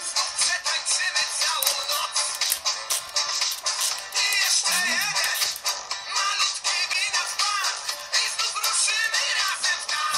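Upbeat dance song played through a small speaker with almost no bass, with a high, chirpy electronic voice singing along from about four seconds in: a Furby toy singing and dancing to the music.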